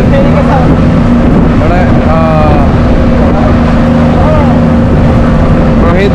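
Motorboat engine running steadily under way, a loud, unbroken low drone.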